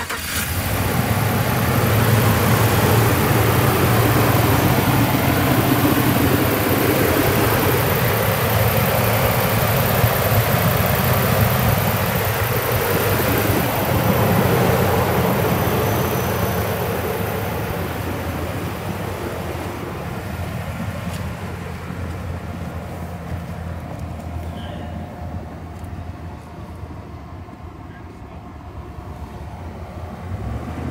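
Pickup truck engine running at a raised idle just after starting, heard from the open engine bay as a steady, loud hum. It grows gradually fainter over the second half.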